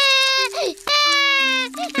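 A cartoon toddler's voice crying: two long, held wails. A few low steady notes step downward in pitch underneath.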